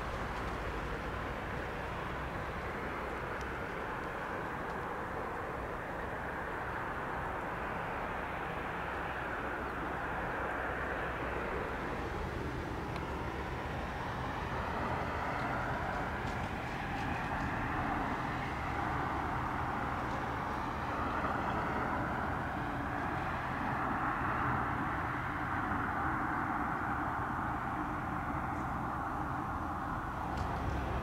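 Freight train of autorack car-carrier wagons rolling past at steady speed. It makes a continuous wheel-and-rail running noise that grows a little louder in the second half, with a few faint clicks.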